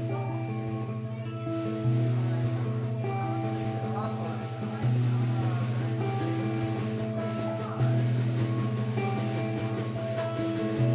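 A live band playing an instrumental folk tune: a fiddle melody with sliding notes over guitar, drums and a bass line that moves to a new note about every three seconds.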